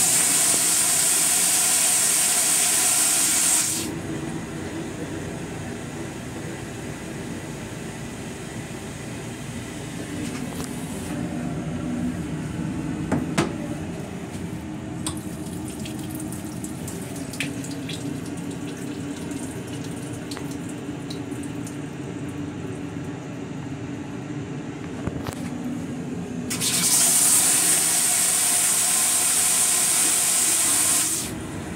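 Amtrak Amfleet II train toilet flushing with a loud hiss of rinse spray lasting about four seconds. Then the restroom sink's faucet runs into the stainless-steel basin over the car's steady low rumble, with a few clicks, and near the end the toilet flushes again with the same hiss.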